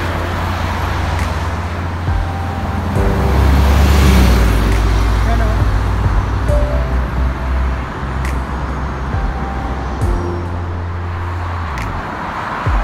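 Night road traffic on a multi-lane highway below, a steady rush of passing cars with a deep rumble that swells about four seconds in and drops away near the end.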